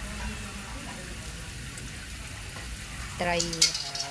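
Cats eating rice mixed with grilled fish from a plate: a steady, crackly noise. Near the end a person speaks briefly, with one sharp click.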